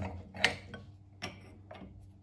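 Steel open-end spanners clinking against a small milling machine's spindle and chuck nut as they are fitted and turned: four sharp metallic clicks, the loudest about half a second in.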